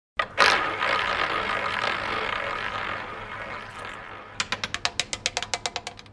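Intro sting under a logo animation: a sharp hit that rings out and slowly fades over about four seconds, then a quick run of even clicks, about seven a second, dying away.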